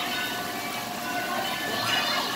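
Water pouring down a water-wheel tower and splashing into a water-play basin, a steady rushing hiss.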